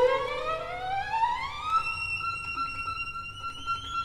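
Unaccompanied solo violin sliding slowly upward in a long glissando for about two seconds, then holding one high note steady.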